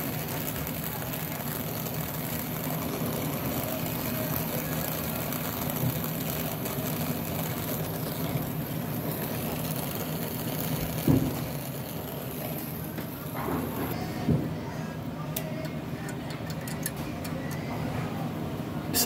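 Brazing torch flame hissing steadily against copper refrigerant tubing, stopping about three-quarters of the way through, followed by a few light clicks.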